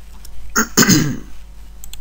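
A man clears his throat with one short, rough cough about half a second in.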